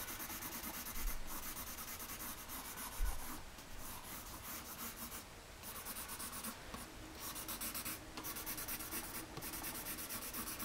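Pencil shading on paper: quick back-and-forth scratching strokes, stopping briefly a few times. Two soft low bumps about one and three seconds in.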